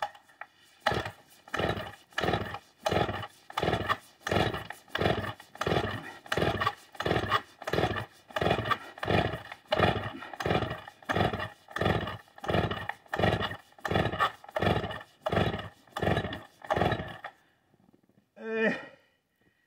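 Vintage Stihl 045 AV two-stroke chainsaw being pull-started over and over: the recoil starter and cranking engine rasp in a steady rhythm of nearly two pulls a second, about thirty in all, and the engine never catches.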